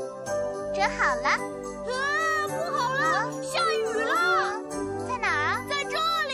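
Children's background music with tinkling, bell-like notes. Over it come repeated swooping, voice-like sounds that rise and fall in pitch.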